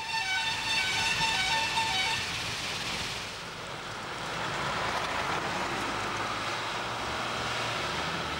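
Road traffic: a short tune of repeated high pitched notes for about two seconds, then the steady rushing noise of trucks on a road.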